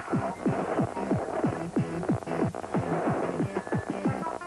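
Electronic music made of quick falling-pitch synth sweeps, about four a second, over a steady low hum.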